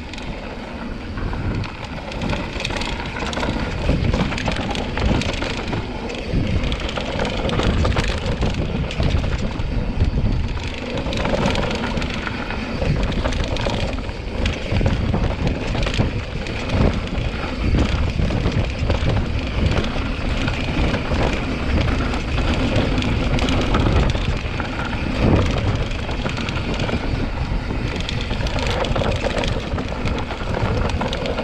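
Mountain bike descending a dirt trail: knobby tyres rolling and crunching over dirt and rocks, with the bike rattling and knocking over bumps throughout, heard through a rider-mounted GoPro, with a low rumble of wind and vibration on its microphone.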